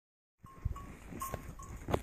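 Knocks and rustle of jostling while riding a camel, with a few faint, short tones. The sound begins about half a second in.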